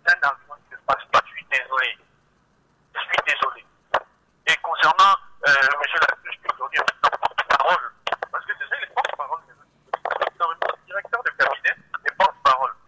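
A caller's voice coming down a telephone line, thin and narrow-band, speaking in runs of words with a short pause about two seconds in.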